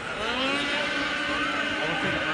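Snocross snowmobile engine working up a hill climb: a steady whine that rises and falls slightly in pitch.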